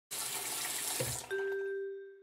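Water running from a bathroom tap over hands being washed. About a second and a half in, a single bell-like chime note takes over, ringing and slowly fading.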